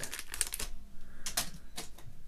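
Foil minifigure blind-bag packet crinkling in the hands along with small plastic Lego parts clicking: a quick run of crackles in the first half second or so, then a few single clicks.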